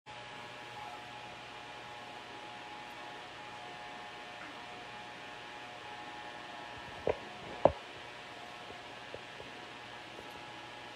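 Cordless hair clipper running with a steady, faint hum. Two short thumps come about seven seconds in, half a second apart.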